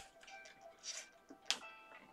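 Soft background music with sustained notes, broken by a single sharp click about one and a half seconds in.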